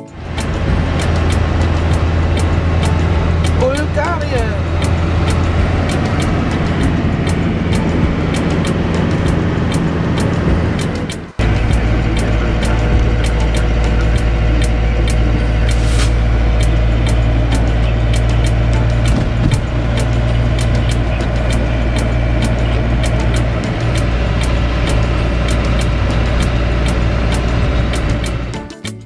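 Steady drone of a Fiat Ducato camper van's engine and road noise, heard from inside the cab while driving. The sound breaks off abruptly about eleven seconds in and resumes with a lower, different drone.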